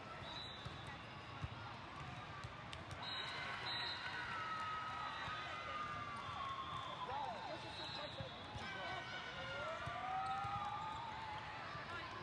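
Echoing ambience of a hall full of indoor volleyball courts: balls bouncing and being struck, a background of voices, and long gliding squeaks through the middle, typical of sneakers on sport-court flooring.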